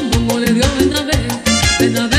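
Salsa music from a sonora-style band playing an instrumental passage: trumpets over bass, keyboard, congas and timbales, with a steady beat.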